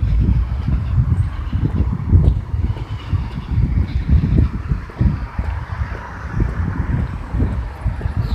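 Wind buffeting a phone's microphone outdoors, a low rumble that surges and drops in uneven gusts.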